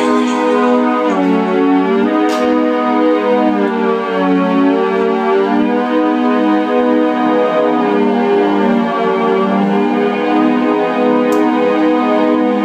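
Electronic synthesizer playing slow, sustained organ-like chords that change every few seconds, with no drums yet.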